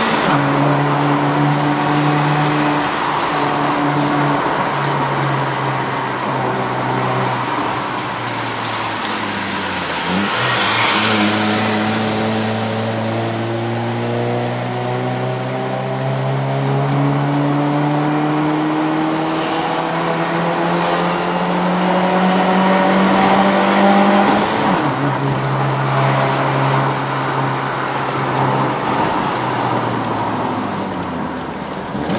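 Honda City's 1.5-litre i-VTEC four-cylinder engine, heard from inside the cabin, pulling hard uphill through a manual gearbox with no CVT whine. Its pitch drops about ten seconds in, climbs slowly for the next fourteen seconds or so, and drops again near twenty-five seconds.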